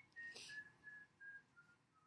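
A person whistling faintly to herself: a slow run of short single notes, each a little lower than the last, with a short hiss near the start.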